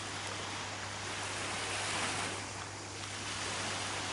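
Gentle surf washing onto a sandy beach, a steady, even hiss of small waves, with a faint low hum underneath.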